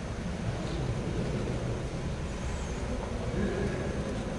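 Steady low rumble with a thin hiss over it: background room noise, with no distinct events.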